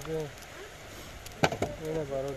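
Two sharp clicks in quick succession about one and a half seconds in, between short stretches of a man's voice.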